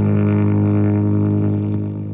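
Electric guitar played through a germanium-transistor Zonk Machine–style fuzz pedal in its Zonk mode: one held low fuzz tone sustaining with a thick, buzzy drone, beginning to fade near the end.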